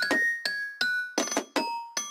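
Background music: a high piano-like melody of single struck notes, about three a second, each ringing and fading.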